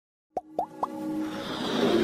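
Intro sound effects: three quick rising bloops, each a little higher than the last, then a swelling whoosh that builds steadily louder.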